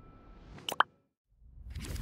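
Logo-animation sound effects: the tail of a whoosh fading out, then two quick pitched pops close together about two-thirds of a second in. After a short silence a second whoosh swells and fades near the end.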